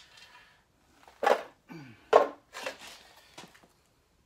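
Tools and hardware being rummaged through and handled: two short clattering knocks about a second apart, then a few lighter clicks.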